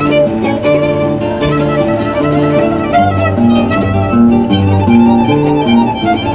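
Solo violin played with the bow, a lively melody over an accompaniment of repeated sustained low notes.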